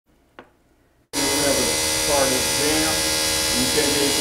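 Battery-powered hydraulic rescue tool's motor running with a loud, steady buzz that starts abruptly about a second in. Faint voices sound beneath it.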